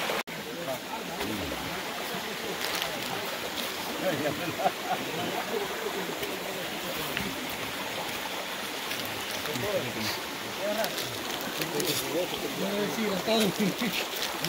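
Shallow stream running steadily over rocks, with men's voices faintly chattering at times.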